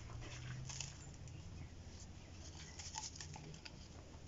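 Faint scattered crackling and rustling of potting substrate being pressed and settled by hand around a kalanchoe, over a low, faint hum.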